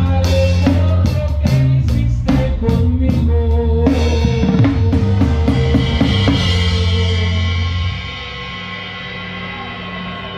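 Live banda music: a drum kit with snare, bass drum and Zildjian cymbals plays busy fills over a tuba bass line and brass. The drum hits thin out after about four seconds under long held brass notes. About eight seconds in, the tuba and drums stop and a quieter held chord rings on.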